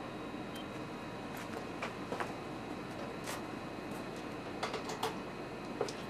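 Quiet room tone: a steady low hiss with a faint steady high whine, and a handful of faint, short clicks and taps scattered through it.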